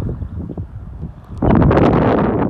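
Wind buffeting the microphone: a rushing, crackling noise that swells sharply about one and a half seconds in and covers the radio talk.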